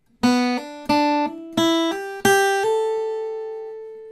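Acoustic guitar playing a series of hammer-ons: four picked notes, each followed by a higher note sounded by the fretting finger alone, eight notes climbing in pitch. The last note rings on and slowly fades.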